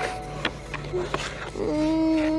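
A young woman's wordless vocalizing: a long, held, moaning note begins near the end, after a few short clicking sounds.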